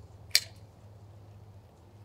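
Poultry shears snipping through a chicken's ribs beside the backbone: one short, sharp crack about a third of a second in.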